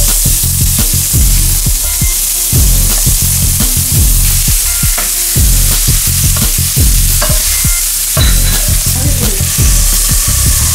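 Chopped onion dropped into hot oil in a non-stick frying pan, setting off a loud sizzle all at once, which keeps going as the onion is stirred in the oil.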